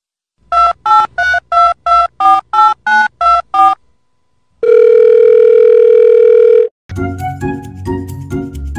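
Telephone keypad tones: about a dozen short two-note beeps that change pitch from press to press, about four a second, then a steady phone-line tone lasting about two seconds. Music starts near the end.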